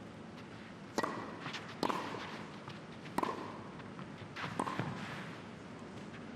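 Tennis rally on a clay court: four sharp hits of racket strings on the ball, about a second apart, over a quiet arena hush.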